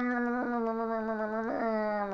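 A man humming a held, nasal "mmm" on a steady pitch in the manner of Mr Bean, with brief catches about half a second and a second and a half in; it cuts off suddenly at the end.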